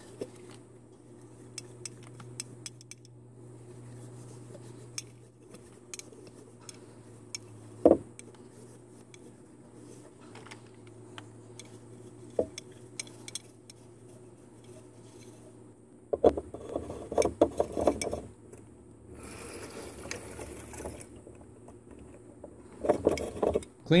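Paper towel rubbing and scraping inside a clear plastic water filter housing, with light clicks and one sharper knock of the plastic about a third of the way in, over a low steady hum. About two-thirds of the way through comes a louder stretch of rushing noise: water from the line rinsing out the housing.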